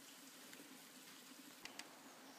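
Near silence: faint background hiss, with two brief handling clicks near the end as the camera is turned around.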